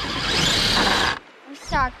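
Traxxas TRX4 Sport RC rock crawler's electric motor and drivetrain under throttle, the tires scrabbling against rock as the truck is stuck on a ledge. The loud whirring noise stops suddenly about a second in.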